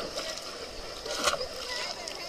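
Swimming-pool water splashing and dripping as a child climbs the ladder out of the water, with a sharper splash a little past the middle. Children's voices sound in the background.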